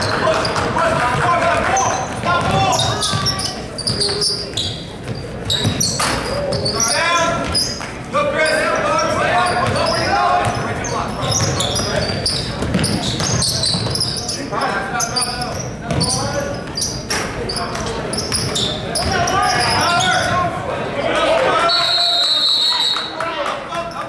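Basketball being dribbled on a hardwood gym floor amid shouting voices from players and spectators, echoing in a large hall. A referee's whistle sounds right at the end.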